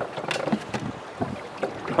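Wind buffeting the microphone and water moving around a small boat on choppy water, with a few light clicks and knocks.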